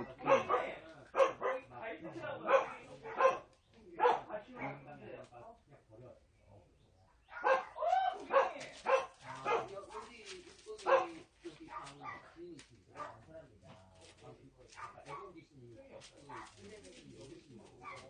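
Dogs barking in short bursts, in two spells, the second starting about seven seconds in, then fading to quieter scattered sounds.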